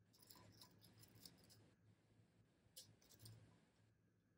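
Very faint handling of cotton fabric and straight pins while a waistband is folded and pinned: soft rustling with small clicks in two short clusters, one early and one near the end.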